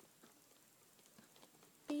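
A quiet room with a few faint, scattered light clicks from a paintbrush working on a plastic model aircraft. A voice starts right at the end.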